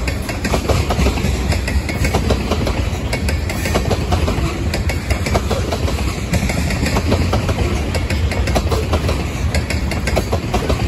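Loaded ethanol tank cars of a freight train rolling past on steel rails: a steady low rumble with frequent clicks and knocks from the wheels.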